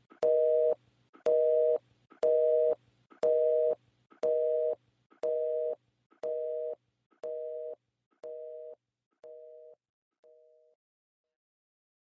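Telephone busy signal, the North American two-tone kind: a beep about once a second, half a second on and half a second off, eleven beeps that fade steadily and stop a little over ten seconds in.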